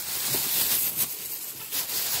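Thin plastic grocery bags crinkling and rustling steadily as a hand rummages through them.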